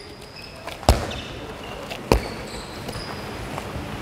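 A handball bouncing twice on a wooden sports-hall floor, about a second apart, each bounce echoing in the hall. Faint short squeaks are heard between them.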